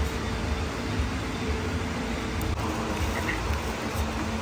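Steady low rumble of indoor room noise, like air conditioning, with one faint click a little past halfway.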